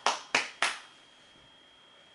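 A person clapping their hands three times in quick succession, sharp claps over the first second, then stopping.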